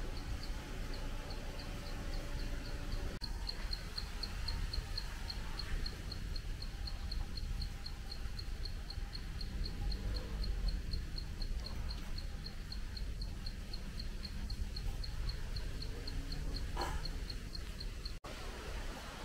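An insect chirping steadily: a short, high tick repeated about four times a second, over a low background rumble.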